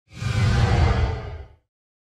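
Whoosh sound effect with a deep low rumble underneath, swelling in quickly and fading away after about a second and a half.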